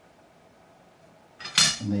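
Near quiet, then about one and a half seconds in a brief, sharp metallic scrape as a 0.2 mm feeler gauge is slid under a precision straight edge resting on guitar frets. The gauge just fits under the edge, showing a gap of about 0.2 mm under the frets.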